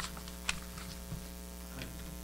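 Steady electrical mains hum, with a few small clicks and taps; the sharpest comes about half a second in.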